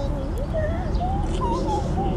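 Sheep bleating: one long, wavering call over a steady low rumble.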